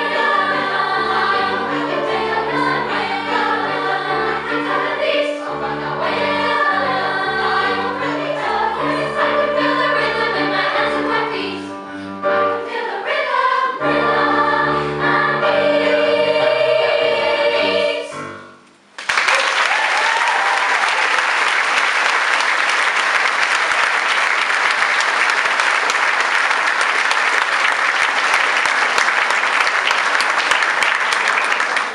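Girls' choir singing with piano accompaniment; the song ends about 18 seconds in, and the audience applauds steadily for the rest.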